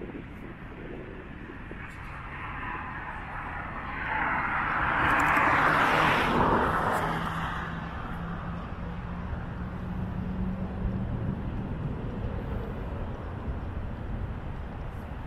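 A vehicle passing by: a rushing noise swells to a peak about six seconds in and then fades, over a steady low hum.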